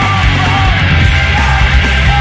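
Loud, dense punk band recording with yelled vocals over the full band.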